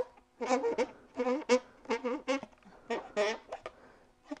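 Marker pen being drawn across an inflated latex twisting balloon while writing letters, giving a series of about seven short squeaks, one with each stroke.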